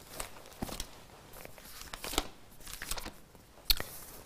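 Faint rustling of paper with a few light clicks scattered through, as pages are handled at the lectern to find a Bible passage.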